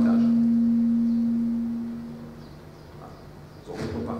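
Public-address microphone feedback: a steady low tone that fades away about two seconds in. A brief voice follows near the end.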